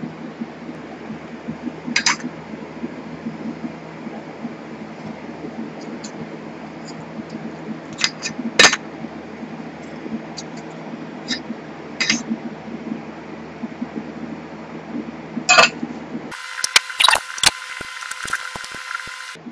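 Glass separatory funnel being handled and shaken during a salt-water wash: a few sharp glass clicks and knocks over a steady background hum, with a quick run of clicks near the end.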